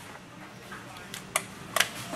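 A few sharp clicks and knocks of a handheld heat gun being picked up and handled, two of them close together near the end.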